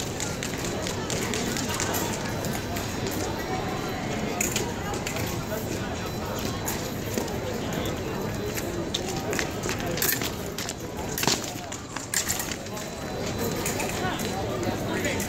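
Background chatter of a crowded hall, with scattered sharp clicks and stamps from fencers' footwork and blades on the metal piste, several of them close together about ten to twelve seconds in.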